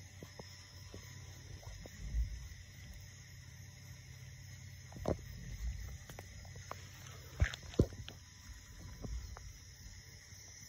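Faint handling noise: a low rumble with a few soft knocks, two of them close together about seven and a half seconds in.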